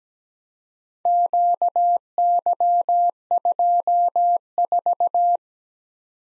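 Morse code sent as a single beeping tone, spelling the group Q Y 2 4 (dah-dah-di-dah, dah-di-dah-dah, di-di-dah-dah-dah, di-di-di-di-dah). It starts about a second in and stops about a second before the end.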